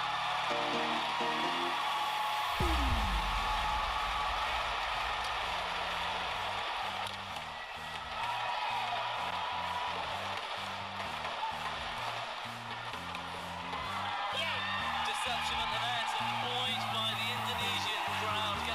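Guitar-led background music with a steady stepping bass line, laid over the haze of arena crowd noise. A deep falling boom comes about two and a half seconds in.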